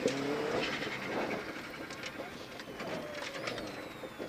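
Rally car's engine heard from inside the cabin, running low and fading as the car slows for a hairpin.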